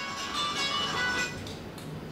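Guitar music from a ringing phone's ringtone, playing under the room.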